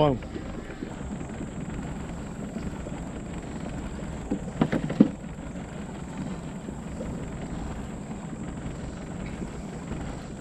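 A small fishing boat under way, its motor running as a steady low rumble with some wind on the microphone. A few short sharp sounds come about halfway through.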